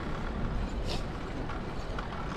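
Steady low rumble of wind on the microphone and tyre noise from a bicycle riding along a smooth paved cycle path, with a short hiss about a second in.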